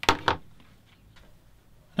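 Two sharp clicks about a quarter of a second apart, then quiet room tone with a few faint ticks.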